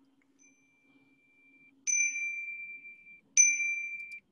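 A faint steady tone, then two clear dings about a second and a half apart, each a single high note that rings on and fades.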